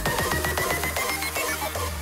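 Electronic dance music build-up: a rapid drum roll under a slowly rising synth tone. The bass drops out briefly and the tone stops shortly before the end, as the level eases down.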